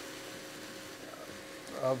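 Faint, steady sizzling of diced red onion and pumpkin sautéing without oil in a stainless steel pot as they are stirred with a silicone spatula. A man's voice comes in near the end.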